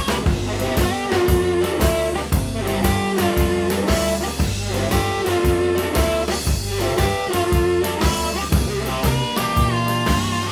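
Electric blues band recording playing an instrumental passage without vocals, with held instrument notes over a steady drum beat and bass.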